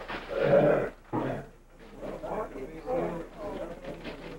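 Indistinct talk among people close to the microphone, with a loud drawn-out voice in about the first second, then quieter murmured speech.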